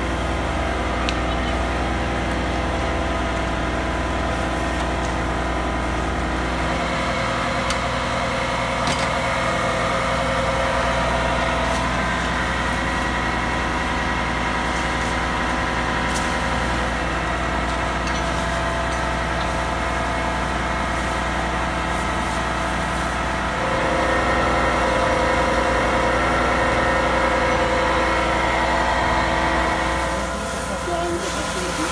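Fire engine's diesel engine running steadily while it drives the pump feeding the firefighters' hose, a constant even hum. It gets a little louder about three-quarters of the way through.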